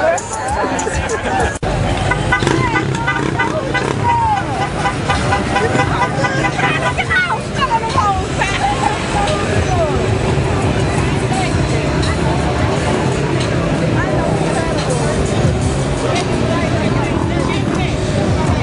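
Crowd of people talking over one another, with music and a vehicle engine running underneath.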